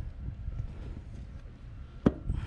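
Low rumble of wind on the microphone, with faint handling noise as a motorcycle seat is pressed down toward its latch.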